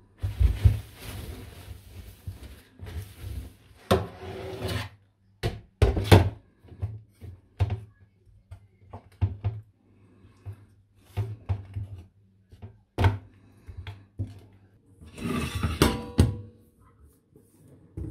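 A wooden spoon knocking and scraping in a glass baking dish as chicken pieces are turned in a sauce, in irregular knocks and thumps, with some rustling in the first few seconds.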